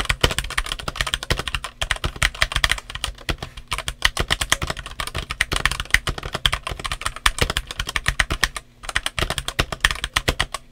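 Redragon K596 Vishnu TKL mechanical keyboard with its stock RD Red switches and OEM-profile PBT keycaps, typed on continuously in a quick, dense run of keystrokes, with a short pause near the end.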